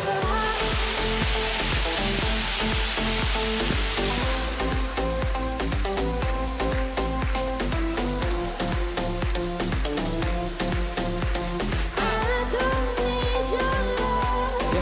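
Live electronic dance-pop track in its instrumental break: a hissing noise sweep over the first few seconds, then a steady beat with a heavy bass line. A woman's singing comes back near the end.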